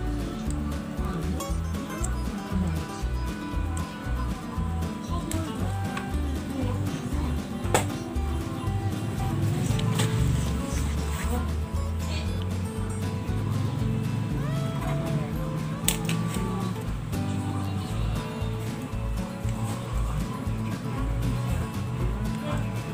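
Background music with a steady beat, broken by two sharp clicks, about eight and sixteen seconds in.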